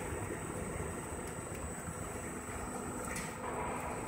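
Steel coil edge protector roll-forming machine running steadily as it forms the notched steel strip into a ring: an even mechanical hum with a constant high-pitched whine and a few faint ticks.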